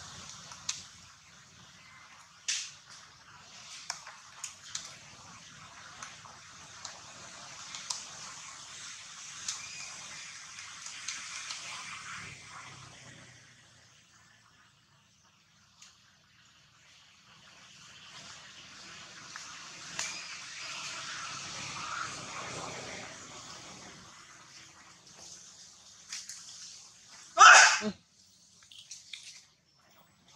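Wet sucking and smacking sounds of an infant macaque nursing at its mother's nipple, with small clicks over a steady hiss that pauses briefly in the middle. A short, loud burst of sound comes near the end.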